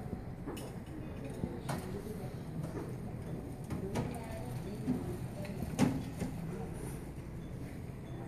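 Indoor public-space ambience: low murmur of voices over a steady hum, with a few sharp clicks and knocks of cups, dishes and skewers being handled at a food counter, the loudest near six seconds in.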